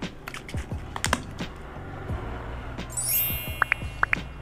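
Light clicks and taps of small items being handled, over soft background music. About three seconds in, a bright shimmering chime sound effect comes in, followed by a few short pops.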